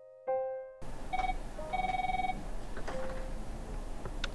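A piano note is struck and fades, then an office desk phone rings with an electronic ring over room noise: one short ring, then a longer one.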